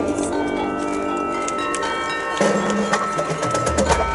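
Marching band playing: winds holding sustained chords with struck percussion notes ringing over them. About two and a half seconds in, the band gets louder as low brass and bass notes enter.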